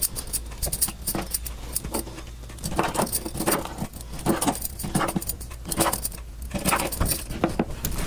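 Kitchen knife cutting raw tilapia fillets on a wooden cutting board: irregular taps and clicks of the blade meeting the board, with glass bangles clinking on the cook's wrist, over a low steady hum.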